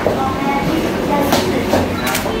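Indistinct voices and room bustle as people move about close to the microphone, with a couple of sharp clicks near the end.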